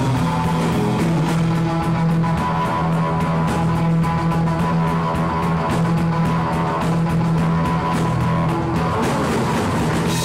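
Surf rock band playing live: electric guitars over a steady bass line and drums.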